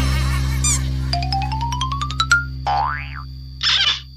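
Edited-in cartoon sound effects over a held low music note: a quick rising run of short plucked notes, then a springy boing about three seconds in, and a short noisy burst near the end.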